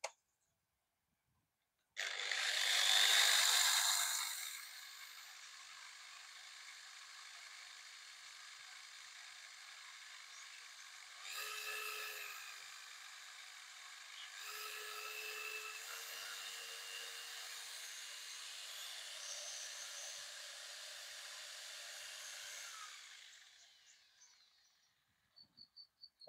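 Ryobi electric rotary polisher with a lambswool pad switched on and run free: a sudden start about two seconds in, loudest for its first couple of seconds, then a steady motor whine. It rises in level and pitch twice partway through, then is switched off and winds down near the end. It is a 100 V machine running on 220 V mains through its constant-voltage circuit.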